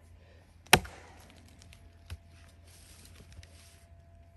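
A single axe blow chopping into a log, one sharp loud strike about a second in, followed by a faint knock about a second later.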